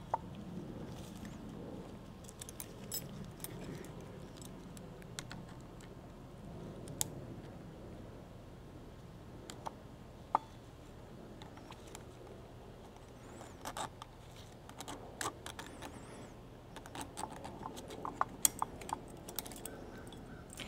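Steel retaining ring being worked onto the splined clutch hub of an NP246 transfer case with snap-ring pliers: faint, scattered light metallic clicks and ticks as the ring is forced past the teeth, coming thicker over the last several seconds.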